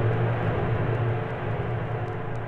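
A low, steady rumbling drone with a haze of hiss above it, slowly fading. It is a sustained effect or held note within the Italo-disco megamix playing from a vinyl LP.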